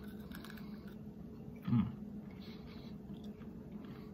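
Chewing of a crispy breaded chicken bite: faint, irregular crunches close to the mouth, with a short 'mm' about halfway through.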